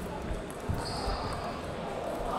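Table tennis balls clicking and bouncing on tables and bats at the surrounding tables, in a reverberant sports hall with background voices. A brief high squeak comes about a second in.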